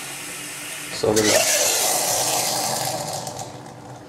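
Steam cleaner blowing steam into a blocked sink drain through a foam-rubber nozzle pressed over the outlet. A steady hiss gives way about a second in to a sudden, louder rough noise that fades over the next two seconds as the steam pushes through the siphon.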